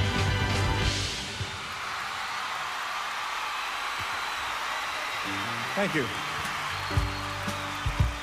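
A live band and orchestra end a song about a second in, and a large audience applauds and cheers. The band comes back in with held chords in the last few seconds.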